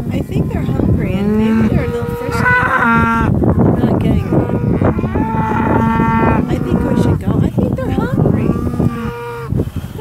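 Several black beef cattle, cows and calves, mooing one after another and at times over each other, the first call about a second in and the last ending just before the end; some calls are long and drawn out. A hungry herd calling.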